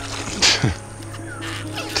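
A short splash about half a second in, as the cast end of a hand line lands in the water, over background music.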